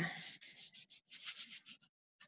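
Paper towel rubbed by hand over a freshly marbled sheet, a quick run of short dry rubbing strokes, about five a second, that stop near the end. It is blotting up excess shaving cream and paint so the paint doesn't drag.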